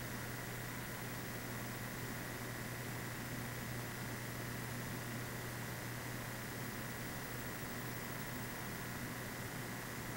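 Steady hiss with a low hum and a faint high-pitched tone underneath, unchanging throughout; background noise with no distinct events.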